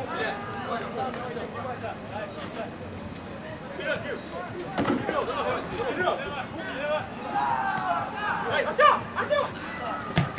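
Players' voices calling and shouting across an outdoor football pitch during play, scattered and indistinct, more frequent in the second half, over a steady faint high whine.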